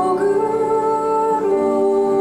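Slow music of voices holding long notes over piano accompaniment, moving to new notes about one and a half seconds in.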